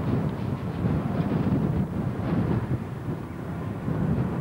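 Wind buffeting the camcorder microphone, a rumbling, gusting noise that rises and falls.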